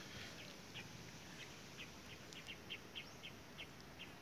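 A bird chirping faintly in the background: a run of about a dozen short, high chirps, roughly three a second, starting about a second in.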